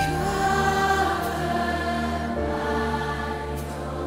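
Live worship band music with voices singing long held notes over sustained chords; the chord changes about halfway through.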